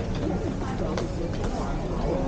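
Indoor shopping-arcade ambience: background chatter of passers-by over a steady low rumble, with a few sharp clicks.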